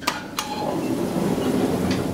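Elevator's automatic sliding doors closing after a panel button is pressed. There are two sharp clicks, then a steady rumble as the door panels slide along their track.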